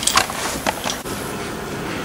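A few sharp clicks and rustles of handling in the first second, then, after an abrupt cut, a steady even background noise outdoors at night.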